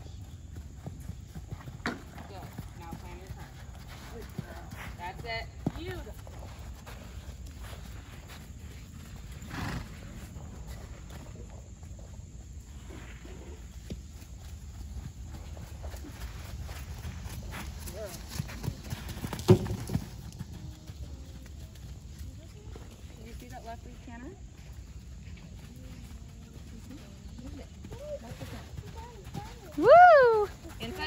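A pony's hoofbeats on sand arena footing as it canters around the ring, a scatter of dull knocks with one louder knock about two-thirds of the way through.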